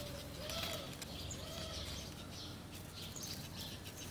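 Birds chirping in the background, with short low cooing calls in the first second and a half.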